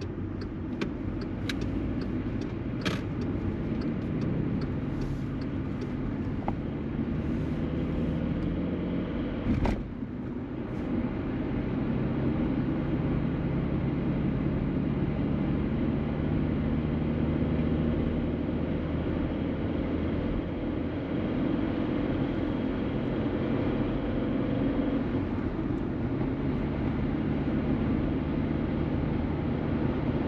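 Car engine and road noise heard inside the cabin while driving, getting louder from about eleven seconds in as the car picks up speed. A few short clicks in the first seconds and a single sharp knock about ten seconds in.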